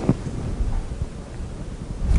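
A single sharp knock just after the start, then a low rumble with faint room noise.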